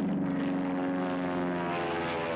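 Propeller-driven piston aircraft engine running steadily, as of a biplane taxiing.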